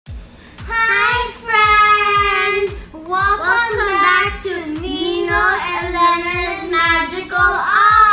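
Children singing an intro tune over a steady low kick-drum beat of about two beats a second.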